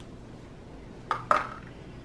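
Clear plastic cups handled on a table: two quick knocks a little over a second in, as a cup is picked up and set down.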